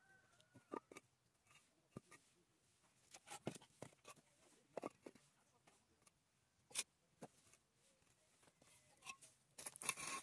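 Faint, scattered knocks and scrapes of fired clay bricks being set down and shifted on dry, gritty soil, about a dozen short separate sounds.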